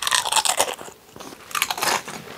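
Crisp tortilla chip bitten and chewed: crunching in two spells, the second near the end.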